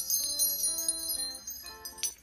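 A magic-transition sound effect: tinkling bells and chimes ringing over a short run of notes, fading away near the end.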